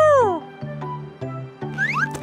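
Cartoon background music with a bass line of short steady notes. At the very start comes a high call from an animated pet creature that rises and falls in pitch, and near the end a rising whistle-like sound effect goes with the creature's arm stretching.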